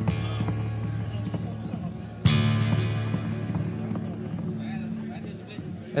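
Acoustic guitar in drop-D tuning played through a delay effect. A low, sustained chord is struck again about two seconds in, over quick percussive taps that imitate galloping horse hooves.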